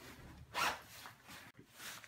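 Jacket zipper being pulled up: a quick zip about half a second in and a shorter one near the end.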